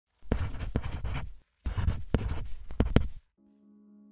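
Scratchy writing on paper in two long strokes, each with a few sharp clicks, as a line is drawn. A quiet, sustained music chord begins near the end.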